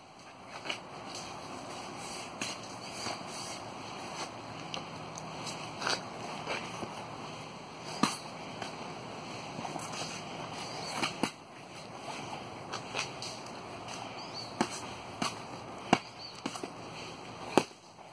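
Padded practice spears knocking against each other in scattered, irregular hits, about a dozen sharp knocks with the clearest one about eight seconds in, over a steady background hiss.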